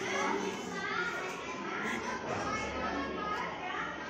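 Children's voices chattering with no clear words.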